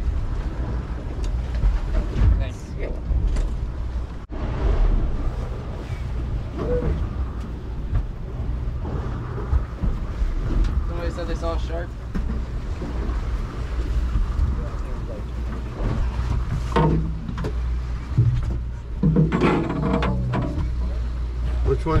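Steady low hum of the fishing boat's engine running, with indistinct voices of people on deck coming and going over it.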